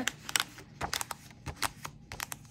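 Punched cardstock sheet being pressed onto a Happy Planner's plastic binding discs: a string of quick, irregular clicks and taps.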